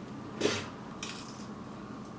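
A woman's short cough-like gag about half a second in, then a fainter breathy huff about a second in: a disgusted reaction to the taste of caviar.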